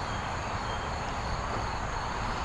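Steady outdoor background noise: an even hiss with a low rumble beneath and faint, thin high insect tones.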